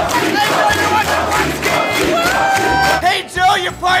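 Concert crowd shouting and singing along over loud music with a pulsing bass beat. One long note is held about two seconds in, followed by choppier shouts near the end.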